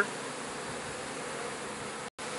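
Honey bees buzzing around an opened hive, a steady, even hum.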